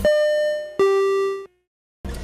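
Two-note descending chime sound effect, ding-dong: a higher ringing note, then a lower one a little under a second later, each fading, then an abrupt cut to silence.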